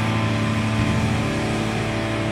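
Rock band on a live stage holding a sustained, distorted chord on electric guitars and bass: a steady, unchanging drone between songs.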